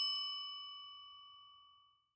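A single bright bell-like chime ringing out with several clear tones and fading away, dying out about a second and a half in.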